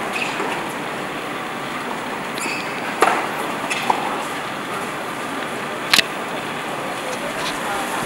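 Outdoor tennis-court ambience: a steady background hiss with faint voices, broken by three sharp knocks, the loudest about six seconds in.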